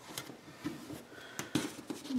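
Hands applying a paper planner sticker and handling a sticker sheet: light rustling with a few small taps, the sharpest about a second and a half in.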